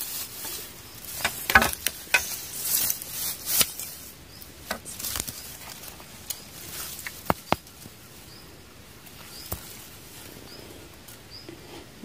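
Rustling through grass and dry leaves, with irregular clicks and scrapes as a gloved hand pokes among stones and litter on the ground. It is busiest in the first few seconds, then thins to occasional clicks.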